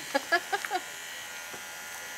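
Corded electric hair clippers running steadily while shaving a man's head.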